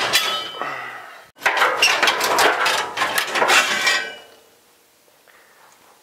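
Loose metal parts and tubing clanking in a steel pickup bed as they are rummaged through and pulled out. A ringing clank fades over about a second, then comes a couple of seconds of busy clattering and rattling that stops near the end.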